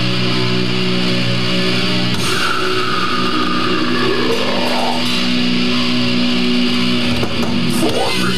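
Death metal band playing live: distorted electric guitars, bass and drums, loud and dense without a break. A long sliding note falls in pitch from about two seconds in, then climbs back up.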